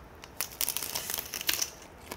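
Crunching of double-fried swimming crab pieces being bitten and chewed with the shell on: a run of irregular crisp crackles from about half a second in until near the end.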